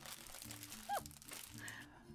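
Faint rustling and crinkling of a large boxed kit's packaging being handled, with a brief squeak about a second in.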